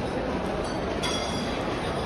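Shopping trolley rolling past over a hard mall floor, its wheels and wire basket rattling, with a brief high squeal about a second in, over steady crowd hubbub.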